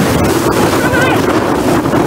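Pool chlorine and brake fluid reacting violently in a metal fire pit, erupting in a tall jet of flame and white smoke with a steady, loud rushing noise.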